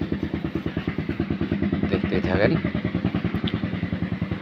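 A small engine running steadily nearby with a fast, even putter.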